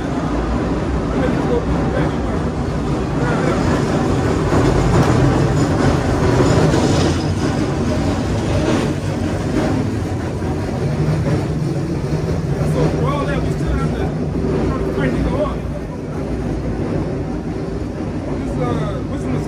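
Steady low rumble of outdoor street noise from passing traffic, swelling twice, with indistinct voices faintly under it.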